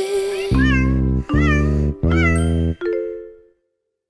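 Three cartoon-voiced cat meows, each rising then falling in pitch, over the closing bars of a children's song. The music ends on a final chord that dies away.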